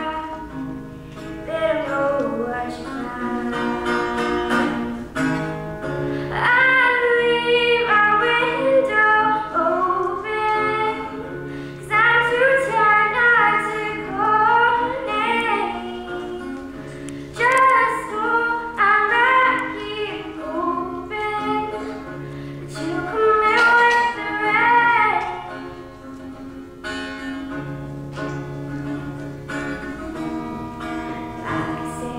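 A young girl singing to her own acoustic guitar accompaniment, the voice coming in phrases over steady guitar chords. Near the end the singing stops and the guitar plays on alone.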